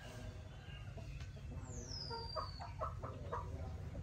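Chickens clucking in short bursts in the background, with one high whistle falling in pitch about halfway through, over a steady low hum.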